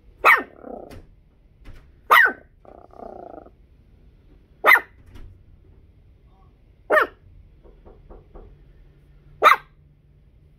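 A dog barking five times, single short barks about two to two and a half seconds apart.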